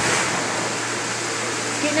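Car wash pressure-washer wand spraying a steady jet of water inside a plastic IBC water tote, rinsing it out, with a faint low hum underneath.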